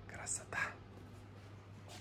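A brief whisper: two quick breathy syllables in the first second, with the mix's music stopped.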